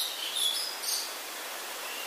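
A pause in a man's lecture: steady background hiss, with a few short, faint high-pitched chirps in the first second.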